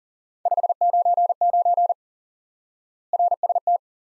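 Morse code sent at 40 words per minute as a single steady keyed tone: a run of fast dits and dahs lasting about a second and a half, a pause, then a shorter run, two code groups in all.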